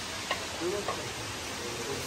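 Steady background hiss with faint, distant voices of people talking.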